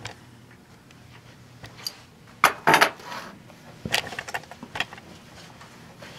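Light knocks and clatter of things being handled and set down, in two short clusters: a sharper one about two and a half seconds in and a run of smaller ticks about a second later.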